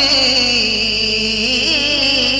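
Male voice singing an unaccompanied Urdu naat, holding one long note that wavers and drifts slowly down in pitch.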